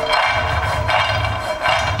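Cashews and almonds dry-toasting in a nonstick frying pan, rattling and sliding against the pan as it is tossed, in a few surges. Background music plays underneath.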